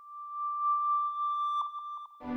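A steady, high electronic tone at one pitch, swelling louder, then breaking into a few short blips near the end.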